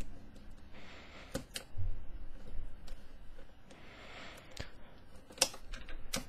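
Plastic pieces of a Meffert's Megaminx being fitted back into the puzzle by hand, with a few sharp scattered clicks and soft rubbing of plastic on plastic.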